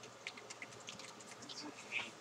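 Faint handling noises: scattered light clicks and rustles from hands moving a paper slip and a helmet's plastic wrapping, with a slightly louder rustle near the end.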